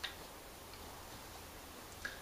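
Quiet room tone with a few small, sharp clicks, the first and loudest right at the start.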